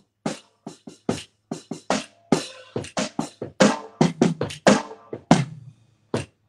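Drums struck with drumsticks in a loose, uneven rhythm of single hits, about three to four a second, some with a short ring.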